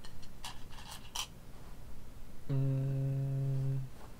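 Go stones clicking against each other as a hand picks through a bowl of stones, several sharp clinks in the first second or so. Then, about halfway through, a man hums on one steady low note for just over a second, louder than the clinks.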